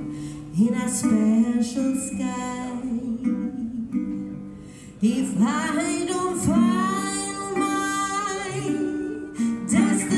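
Live guitar music: a guitar picked and strummed, dropping away just before halfway, then coming back sharply about five seconds in with notes that slide up in pitch.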